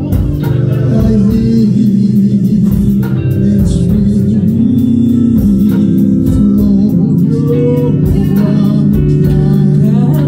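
Live gospel music: a man singing into a microphone over amplified bass guitar and guitar, with a steady cymbal beat.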